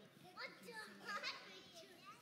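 Young children's voices chattering and calling out at a low level, with two louder calls about half a second and just over a second in.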